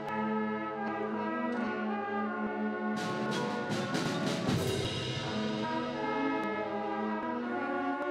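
School concert band playing the opening of a piece: sustained chords from woodwinds and brass over timpani, with a cluster of sharp percussion strikes about three seconds in.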